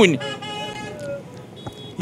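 Street traffic in the background, with faint steady car horns sounding, one higher-pitched near the end.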